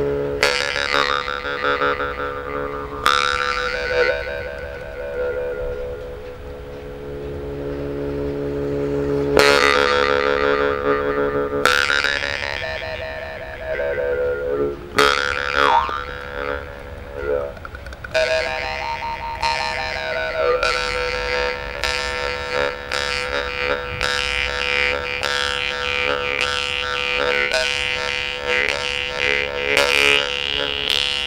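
Yakut temir-khomus jaw harp (Volgutov's "Vedun") played by mouth: a steady buzzing drone with overtones that slide up and down as the mouth shapes them. At first the tongue is struck only every few seconds and left to ring; from about two-thirds through it is plucked quickly and rhythmically.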